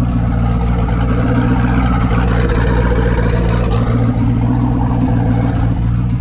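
Twin-turbo LS V8 of a motorhome idling steadily, heard from inside the cabin.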